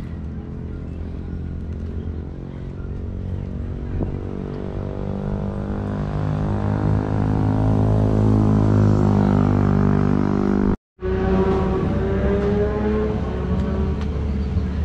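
Low, steady drone of a heavy diesel engine, growing louder over several seconds with its pitch edging up, then cut off abruptly for a moment near the end before carrying on.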